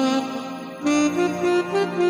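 Electronic keyboard playing a melody over sustained backing chords. A held note fades for almost a second, then the melody resumes with notes stepping upward in pitch.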